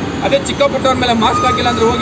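A man speaking in Kannada over steady street traffic noise.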